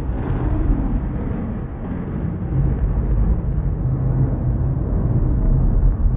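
A steady low rumbling noise with no tune or beat, heaviest in the bass and slowly swelling and easing.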